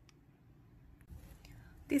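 Near silence: room tone, with one faint click about a second in. A voice starts speaking right at the end.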